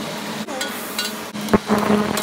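Chopped garlic and onion sizzling as they land in butter in a stainless steel pot, with knocks and clinks of a knife and spatula against the wooden board and the pot rim, the loudest knock about one and a half seconds in.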